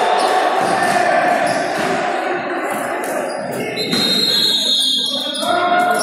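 A futsal ball kicked and bouncing on the hard floor of a sports hall, with echoing voices and music with long held notes playing over it.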